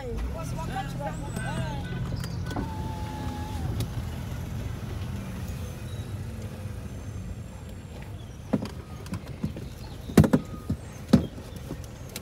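Low steady hum of a car creeping along slowly, heard from inside the cabin, with faint voices in the first couple of seconds. A few sharp clicks or knocks come near the end, the loudest about ten seconds in.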